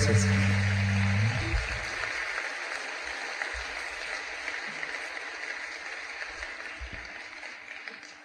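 Live audience applause fading slowly away, under the last sustained chord of the band, which stops about a second and a half in.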